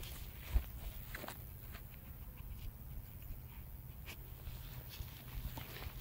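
Quiet footsteps of a person and a dog moving through grass, with a few light ticks and a faint low rumble underneath.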